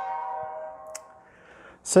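Steady motor whine from the Lego ball contraption, fading away over the first second or so, with one sharp click about a second in.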